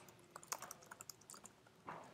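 Faint typing on a computer keyboard: a quick run of light key clicks as a line of text is typed.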